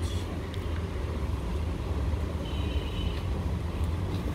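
Steady low background rumble, with faint rustling as a folded piece of fabric is unwrapped and shaken open.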